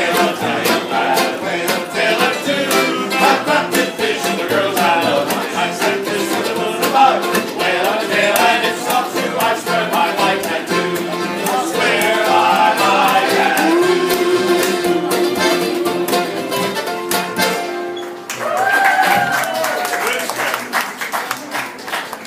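Live acoustic band of accordion, upright bass, banjo and acoustic guitar playing a sea shanty, with men singing along. A long note is held a little past the middle. The music breaks off briefly about 18 seconds in, then a single voice sings out one rising and falling phrase near the end.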